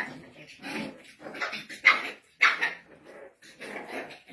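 Small puppies play-fighting, giving a handful of short, separate yaps and growls.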